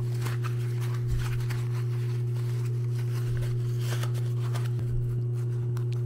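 Steady low electrical hum throughout, with faint rustling and scuffing of stiff nylon fabric as a sewn pouch is worked right side out by hand.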